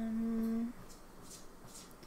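A woman's voice humming one steady, level 'hmm' in thought, which stops under a second in.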